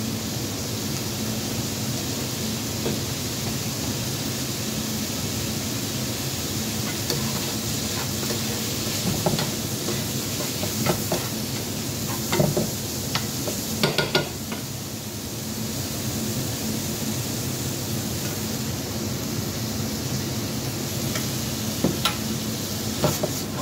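Pork chow mein sizzling in a frying pan, with metal tongs clicking against the pan as the noodles are tossed, mostly between about 9 and 14 seconds in.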